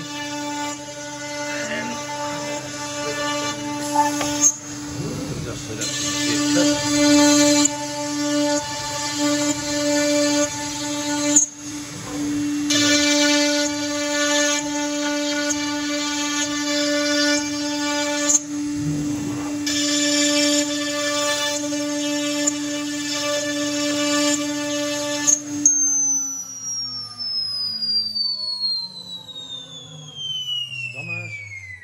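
CNC router spindle running at high speed with a steady whine while it cuts the wood panel, the cutting noise coming in three long stretches with short breaks. About 26 s in the spindle is switched off and its whine falls steadily in pitch as it spins down for an automatic tool change.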